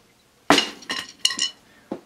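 A wooden drumstick thrown at a rubber practice pad on a snare drum: one hard hit about half a second in, then a few lighter bounces with a brief ring. This is the 'thrown' stroke, the stick flung at the drum and let go rather than bounced from a proper grip.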